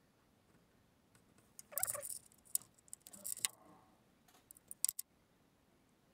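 Small handling noises of wire ends and small metal connector parts being worked by hand: a brief rustle about two seconds in, then a few sharp little clicks and taps, ending abruptly near the end.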